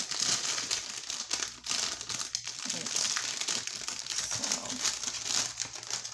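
Clear plastic wrapping crinkling continuously as it is handled and pulled off a cardboard card box.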